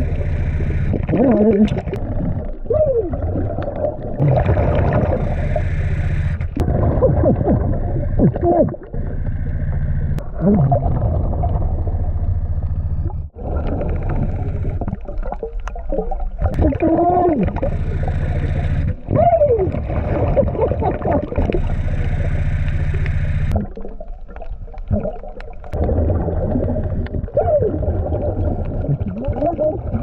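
Underwater recording of a diver's muffled, garbled voice through a regulator mouthpiece, gliding up and down in pitch, over regulator breathing and exhaust bubbling and a steady low hum.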